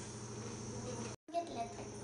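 Quiet steady background: a faint high-pitched hiss or whine with a low hum under it. It drops out completely for an instant a little over a second in.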